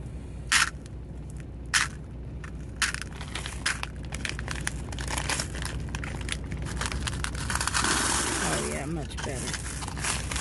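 8 mm agate stone beads clicking against one another and a glass bowl as they are poured into a plastic zip-top bag: a few single clicks, then a rapid pattering rattle from about three seconds in, and crinkling of the plastic bag near the end.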